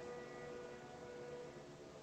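A faint, steady held tone that fades out after about a second and a half, leaving near silence.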